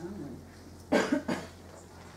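A person coughing: three quick coughs about a second in.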